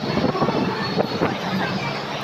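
Busy room tone: a steady rushing background with indistinct voices, and a couple of sharp clicks about a second in.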